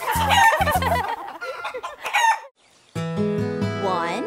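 A cartoon hen's clucking and crowing sound effect over the last bars of a children's song. The music stops about two and a half seconds in, and a new song starts near the end with sustained instrument tones.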